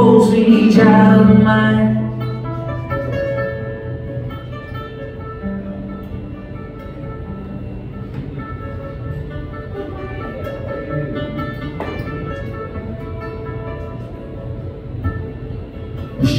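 Solo acoustic guitar played live. A held sung note and louder playing end about two seconds in, then softer picked notes ring out as an instrumental break.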